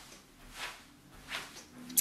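Two soft barefoot footsteps on carpet, then a short sharp click near the end.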